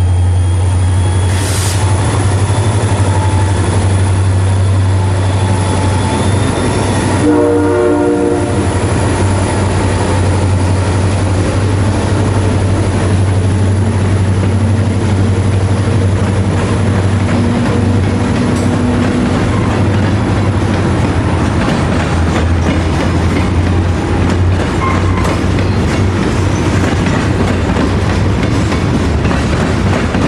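Freight train passing close by: CN and CSX diesel locomotives with a deep, steady engine drone, and a short blast of a multi-note air horn about seven seconds in. A long string of open-top freight cars then rolls past with steady wheel clatter.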